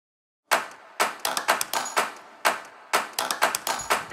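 A rhythmic run of sharp, clap-like percussive hits starting half a second in after silence, in a syncopated pattern of single hits and quick pairs, as the percussive lead-in of a music track.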